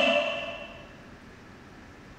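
The echo of a man's loud, amplified chanting voice dying away over about the first second, leaving a faint steady hiss.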